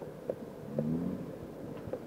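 A pause in an old speech recording: low, steady background hum and hiss with a few faint clicks, and a brief low murmur from a man's voice about three quarters of a second in.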